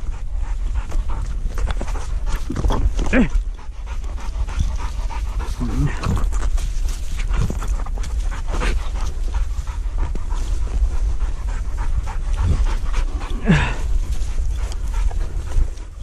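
A hunting dog panting close to the microphone, with steady rustling and handling noise and a few brief voice sounds scattered through.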